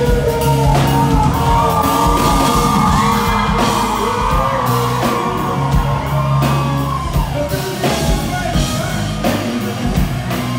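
Live rock band with a male lead singer singing into a handheld microphone over drums, bass and guitar, holding a long sustained note through the middle of the passage.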